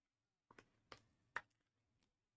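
Three light clicks or taps, about half a second apart with the last the loudest, otherwise near silence: trading cards and plastic card cases being handled on a table.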